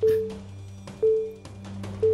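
Quiz-show countdown music bed: a short, low tone struck about once a second, fading after each hit, over a steady low drone.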